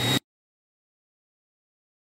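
A brief rising radio hiss with a thin steady tone that cuts off abruptly just after the start, followed by total silence.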